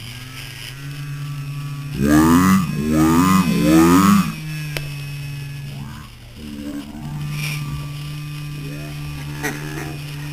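A person's voice holding low drawn-out hums or groans, with louder swooping vocal sounds about two to four seconds in and shorter ones later on.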